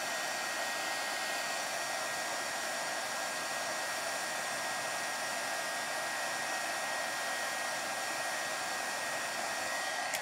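Wagner heat gun running steadily, a blower hiss with a thin high whine, melting clear embossing powder over black stamped ink until it turns clear and shiny.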